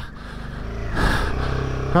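Royal Enfield Himalayan 450's single-cylinder engine running steadily under load as the bike rides on, getting louder over the first second, with a brief rush of noise about a second in.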